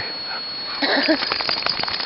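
A corgi gives a few short whimpers about a second in, among a cluster of scuffling and rustling sounds as it plays.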